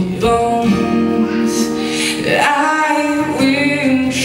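A male singer sings live into a microphone, accompanying himself on a Fender acoustic guitar, with long held notes.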